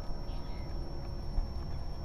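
Quiet outdoor background noise: an even low rumble with a faint steady high tone, and no distinct event.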